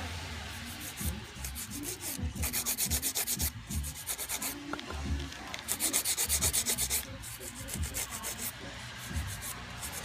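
A hand nail file scraping back and forth across the tips of dip-powder-coated fingernails, shaping them square. The quick strokes come in runs of about a second, with short pauses between.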